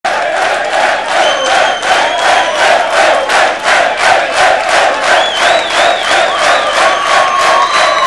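Concert crowd clapping in steady rhythm, about three claps a second, with cheering and shrill whistles over the top.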